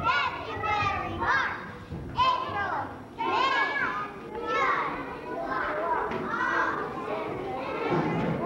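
Many young children's voices at once, high-pitched and overlapping.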